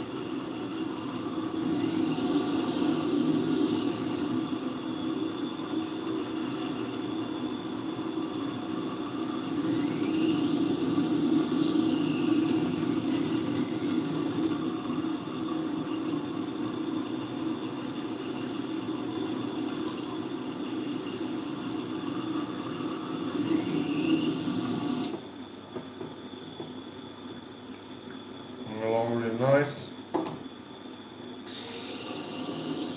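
Knife blade ground on the slow-turning water-cooled stone of a Tormek T-4 sharpener, held in a knife jig. It makes a steady rasping hiss that swells and eases with each pass while the second side of the bevel is re-ground. The grinding stops suddenly about 25 seconds in, when the blade is lifted off the stone.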